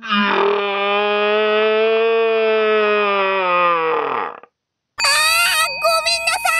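A long, drawn-out cartoon cry or wail of about four seconds on one held pitch, sagging downward and fading at the end, as the toy figure lies knocked down. After a brief silence, a different pitched sound effect with steady ringing tones starts near the end.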